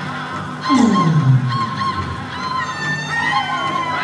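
Powwow song singing in a large arena. About a second in, a loud voice slides down in pitch, and near three seconds a high, slightly wavering cry is held.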